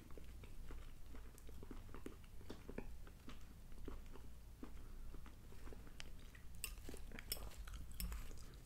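A man chewing a mouthful of chunky canned soup with burger meat and vegetables: faint, quick mouth clicks throughout. Near the end a few sharper clicks as his fork goes back into the ceramic bowl.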